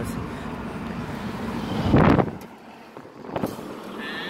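Road and engine rumble inside a moving truck's cab, with a brief louder rush of noise about halfway through. After it the low rumble falls away and the cab goes quieter, with a faint click near the end.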